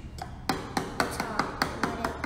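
A paintbrush handle tapping quickly on an upturned plastic cup of pour paint sitting on a canvas, about eight light taps starting half a second in, to loosen the paint out of the cup.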